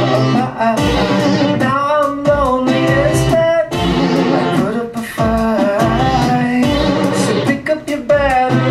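Live rock band playing a song: a male voice sings gliding, held notes over electric guitar, keyboards and drums.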